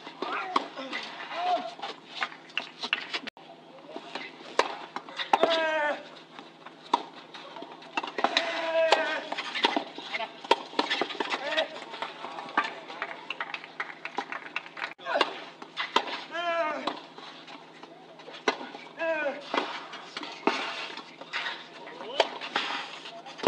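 Tennis points on a clay court: sharp racket-on-ball strikes and ball bounces at irregular intervals, with several short, pitched vocal cries from the players on their shots.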